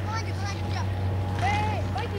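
Short shouts and calls of players' voices from across the field, the clearest about one and a half seconds in, over a steady low hum.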